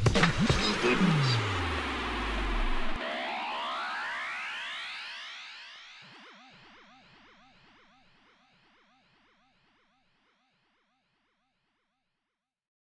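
Electronic music and synthesizer effects: a dense, loud passage with a low tone sliding down in pitch, cut off suddenly about three seconds in, followed by repeated rising synth sweeps and warbling tones that fade away to silence by about ten seconds in.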